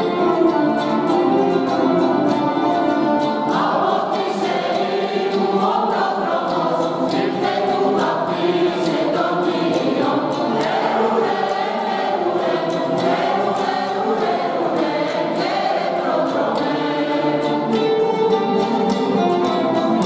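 Mixed choir singing a traditional Greek Christmas carol (kalanta) in several voices, with instrumental accompaniment.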